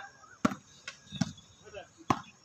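Volleyball being struck by players' hands during a rally: three sharp slaps in quick succession, then a fainter one.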